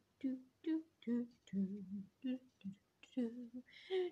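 A woman humming a tune to herself in a string of short notes with brief gaps between them.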